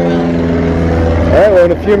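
Steady drone of a propeller aircraft engine running, a low even hum under a voice that starts near the end.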